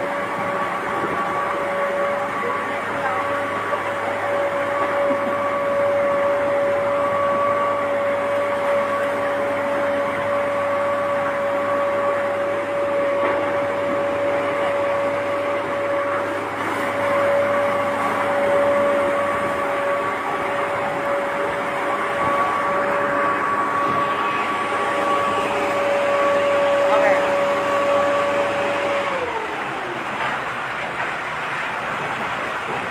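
A fire truck's machinery gives a steady high-pitched whine, holding one pitch, then falls away in pitch about a second before the end.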